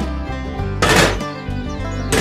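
Background music, with a short burst of noise about a second in.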